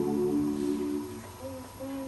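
Mixed choir singing: a held chord of several voices fades away about a second in, then softer, shorter notes begin the next phrase.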